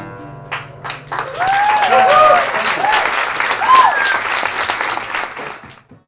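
The last acoustic guitar chord rings out, then a small club audience applauds from about a second in, with voices calling out over the clapping. The applause fades and cuts off just before the end.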